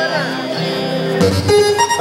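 Live band playing between songs: several instruments, a guitar among them, hold sustained notes. A bit over a second in, a low note comes in and a short run of notes steps upward in pitch.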